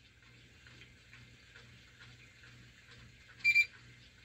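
Faint ticking about twice a second, then about three and a half seconds in a short, high electronic beep, one of a series about a second apart, like an alarm or timer going off.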